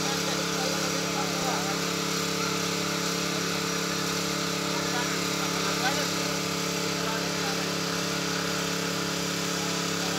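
A steady mechanical drone, like an engine running at constant speed, with workers' voices calling faintly over it.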